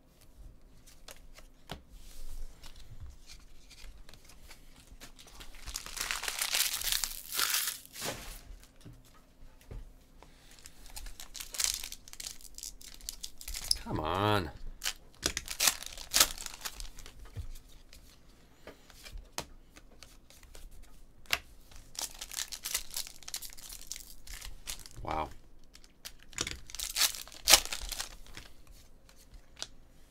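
Foil trading-card packs torn open and crinkled by hand, in several separate bursts of tearing and rustling.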